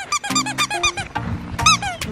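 Squeaky dog toy squeezed by hand again and again: a quick run of short, high squeaks, several a second, with a burst of them near the end. Background music plays under it.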